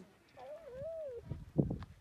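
A high-pitched, drawn-out call that wavers up and down for most of a second, starting about half a second in.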